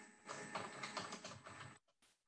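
Typing on a computer keyboard: a quick run of keystrokes lasting about a second and a half, stopping shortly before the end.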